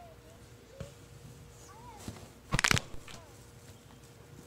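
A brief cluster of sharp knocks about two and a half seconds in, the loudest sound, over faint distant voices and a steady low hum.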